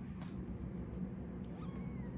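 A young kitten giving a short, thin, high-pitched mew near the end.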